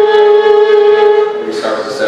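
Fiddle playing a long, steady bowed note that changes to a different note about one and a half seconds in.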